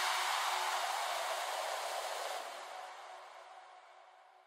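A synthesized white-noise wash from a hardstyle track dies away after the beat and bass have stopped. The hiss loses its top end and fades steadily to almost nothing, with faint held tones underneath.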